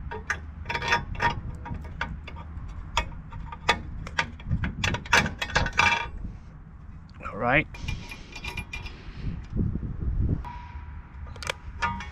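A steel U-bolt clinking and scraping against a galvanized steel winch-seat plate and trailer tongue as it is worked through the bolt holes: a run of sharp, ringing metal clinks for the first half, then softer scraping and rubbing, with a short squeak about halfway through.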